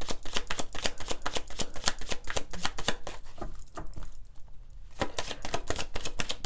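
Tarot cards being shuffled by hand: a rapid run of crisp card clicks that stops for a moment about three and a half seconds in, then starts again near the end.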